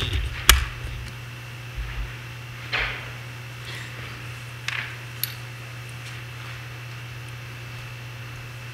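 A sharp knock about half a second in, then a few scattered soft knocks and brief rustles, over a steady low hum in a hall.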